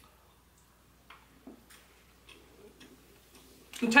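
Two people quietly chewing bites of a soft, oily protein bar: a few faint, scattered mouth clicks.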